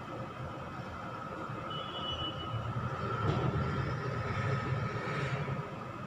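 A steady low rumble of room background noise while a marker draws on a whiteboard, with a brief faint high squeak about two seconds in.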